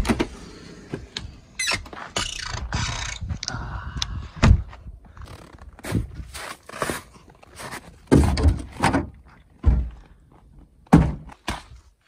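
Handling noises of a key in a door lock and a door opening, then scraping and rustling and several heavy wooden thunks, the loudest about four and a half seconds in and again around eight, ten and eleven seconds in, as a way into the space under the house is opened and climbed into.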